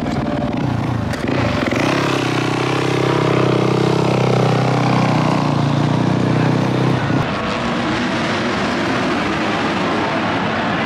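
A dirt bike engine running steadily close by. About seven seconds in it gives way suddenly to the more distant, mixed drone of several motorcycles racing on a supercross track.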